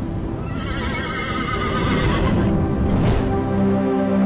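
A horse whinny sound effect over dramatic music, accompanying a team logo reveal for a side named the Stallions. About three seconds in a short swoosh passes, and the music settles into steady held notes.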